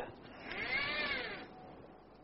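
A single pitched squeal, rising and then falling in pitch, lasting about a second.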